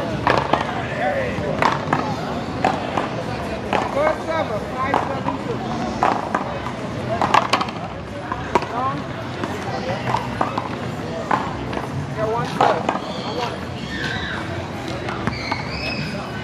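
Paddleball rally: sharp cracks of paddles striking a rubber ball and the ball smacking the concrete wall and ground, every second or so. Players' and onlookers' voices run underneath.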